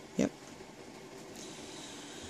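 A single short vocal sound, like a brief grunt or hum, a moment in, then low steady room tone.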